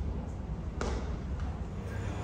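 Low, steady rumble of room ambience in a large hall, with a single sharp knock a little under a second in.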